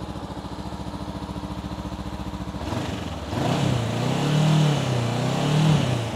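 2019 Honda CB500X's parallel-twin engine idling with an even exhaust pulse, then revved up and let back down from about three seconds in.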